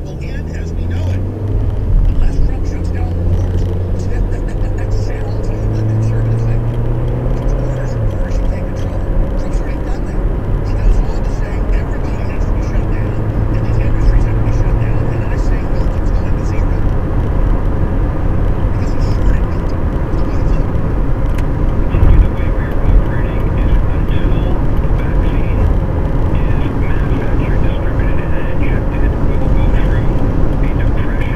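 Car pulling away from a stop and accelerating, heard from inside the cabin: the engine note rises, drops about eight seconds in, rises again, then settles into steady engine, tyre and road noise at cruising speed.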